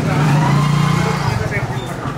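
A motorcycle's engine running as it passes close by, loudest in the first second and fading away about a second and a half in.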